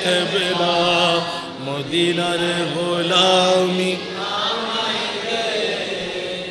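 A man's voice chanting a Maizbhandari devotional song in long, drawn-out held notes that bend slowly in pitch.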